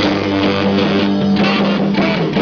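A live band playing an upbeat rock-and-roll number, with electric bass, guitar and a saxophone section.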